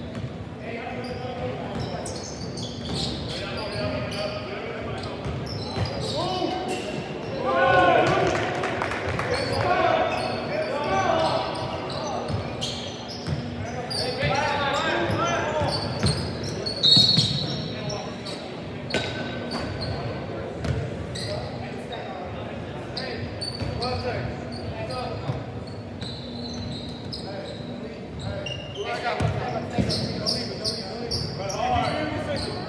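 A basketball bouncing on a hardwood gym floor during play, with players' shouts carrying through the large, echoing hall. The voices are loudest about a third and halfway through.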